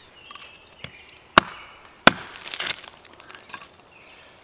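Kodiak large knife contact-splitting kindling against a log: two sharp chops about two-thirds of a second apart, the second followed by a brief crackle as the wood splits.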